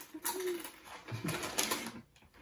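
Potato crisps crunching as they are chewed, and a plastic crisp bag crinkling as it is handled, with short closed-mouth 'mm' hums.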